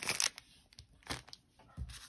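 Foil trading-card pack wrappers crinkling in a few short crackles as the packs are handled, then a soft low bump near the end.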